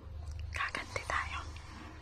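A person whispering briefly, starting about half a second in and lasting under a second, over a faint steady low hum.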